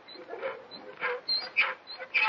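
A seat creaking and squeaking in short, repeated bursts as it is swung back and forth, likely a sound effect.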